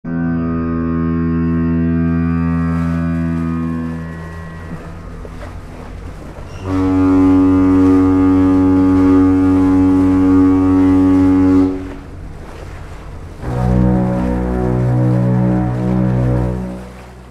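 Ship's fog horn: three long, steady blasts at different pitches, each lasting four to five seconds, the third one wavering. A rushing hiss fills the gaps between the blasts.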